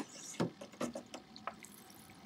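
A hooked bass thrashing at the surface beside the boat as it is brought to the net: a few short, separate splashes and knocks of water.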